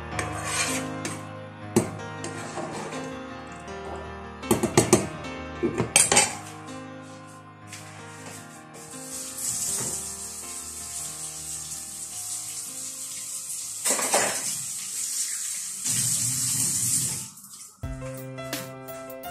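Metal utensils knock and clatter against a pot several times in the first six seconds. From about nine seconds in, a tap runs steadily into the sink, with a few clinks of dishes being washed.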